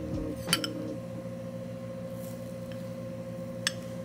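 Metal spoon clinking against a glass bowl twice, once about half a second in and once near the end, over a steady low hum.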